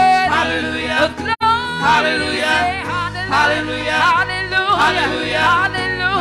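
Gospel praise team of several singers singing through microphones, the voices gliding and wavering in ornamented runs. A steady low accompaniment note comes in about three seconds in, and the sound drops out for an instant about a second and a half in.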